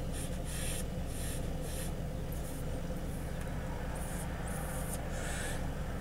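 A person puffing on a small hand-rolled joint: a string of short, soft hissy draws of air, several a few seconds apart. Under it runs a steady low hum in the car cabin.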